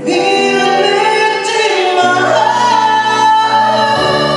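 A male ballad singer's amplified live voice holds a high, sustained line over backing music. It comes in loud right at the start and stays loud throughout.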